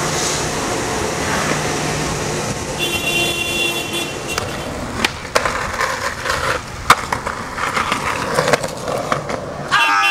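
Skateboard wheels rolling over rough asphalt, then a run of sharp clacks as the board pops, hits a concrete ledge and lands, with the scrape of the board sliding along the ledge. The loudest clack comes about seven seconds in.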